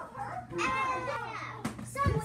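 A child's high-pitched voice calling out in an excited, play-acting tone over music.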